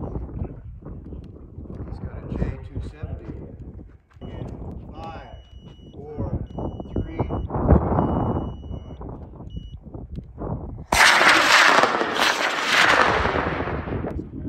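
Two high-power model rocket motors igniting together about eleven seconds in, followed by about three seconds of loud motor roar as the rockets lift off side by side. Before the launch there is wind on the microphone, voices and a series of short, high electronic beeps.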